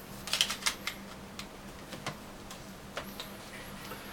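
Light plastic clicks and taps from a BlackBerry 9700 being handled: a quick cluster of clicks in the first second, then a few scattered single ticks.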